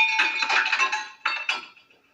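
Television cartoon soundtrack heard through the TV's speaker: a short sound effect with held tones and a few sharp clinks, under music, fading out to silence near the end.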